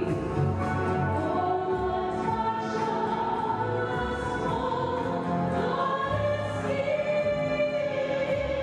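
Several voices singing long held notes together over low instrumental bass notes, part of an opera's score.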